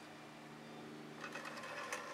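Faint rolling rumble of a painting turntable being turned by hand, starting about a second in, over a steady low hum.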